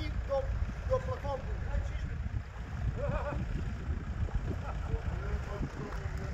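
Faint voices of people calling at a distance, in short snatches, over a steady low rumble.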